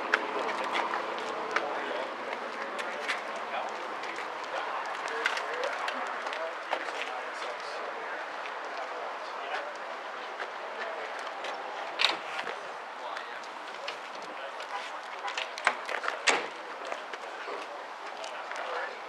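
Background talk of people milling about, with a few sharp knocks: one about twelve seconds in and a couple more around sixteen seconds.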